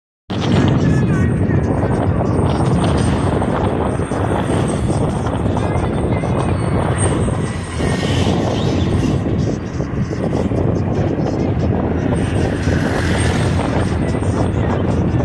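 Loud, steady rumble of street and traffic noise, with faint voices in it.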